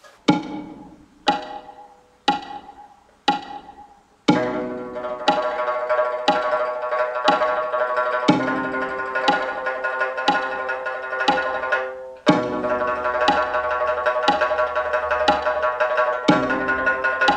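A shanz (Mongolian three-stringed plucked lute) playing a slow legato exercise at 60 beats a minute, with a click on every beat. Four single struck notes come one second apart, then from about four seconds in the notes sound continuously, some linked to the next note without a fresh pluck.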